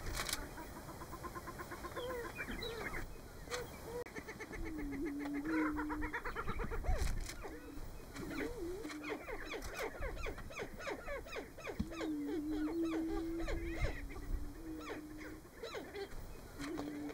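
Male greater prairie-chickens displaying on a lek: low, held booming notes come again and again, with quicker, higher calls in between.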